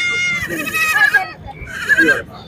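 Goat kids bleating: a string of high-pitched bleats, the first held for about a second, then shorter ones with falling tails.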